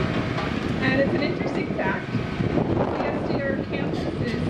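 Indistinct voices in the background over a steady low rumble of outdoor noise.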